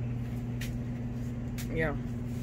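Steady low hum of a machine running in the workshop, with a faint click about half a second in.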